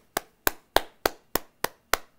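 One person clapping hands in a steady rhythm, about three sharp claps a second.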